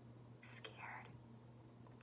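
A woman whispering a few soft syllables, with a brief hiss about half a second in and a breathy patch just before the one-second mark, over near silence and a faint steady low hum.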